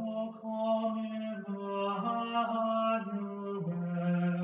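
A single voice chanting a slow melody, holding each note on a steady pitch and stepping from one note to the next.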